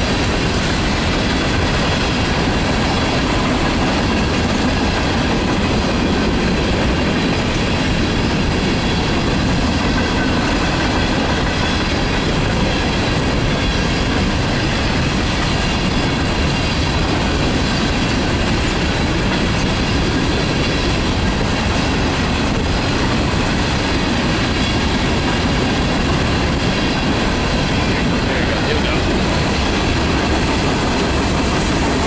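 Coal hopper cars of a freight train rolling past at speed: a steady rumble of steel wheels on the rails with clickety-clack from the rail joints and faint wheel squeal.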